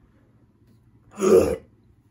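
A man's single short, loud vocal outburst about a second in, a reaction to a drink he has just called terrible.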